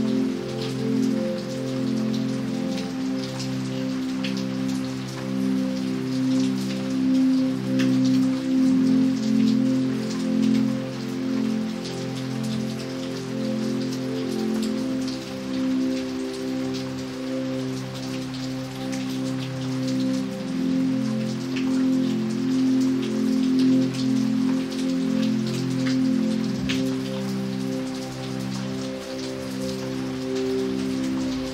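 Steady rain falling on pavement and puddles, a constant hiss with scattered individual drop splashes. Under it, soft slow music of long held low notes changes gently every second or two.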